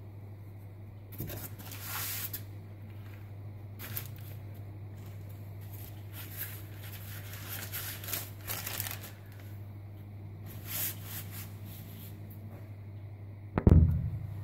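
Baking paper rustling and crinkling in irregular bursts as puff pastry is rolled up on it, over a steady low hum. A loud thump comes near the end.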